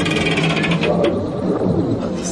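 Film sound effect of the flying pepelats craft: a loud warbling mechanical drone made of several pitched tones, some sliding up and down across each other near the middle, with a bright ringing on top in the first second.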